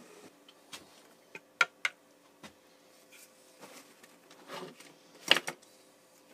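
Handling noises at a workbench: a few scattered sharp clicks and knocks, a short rustle about four and a half seconds in, and the loudest clatter just after five seconds.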